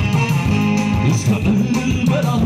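A live band playing an Eritrean song, led by a busy electric bass line, with keyboard and saxophone.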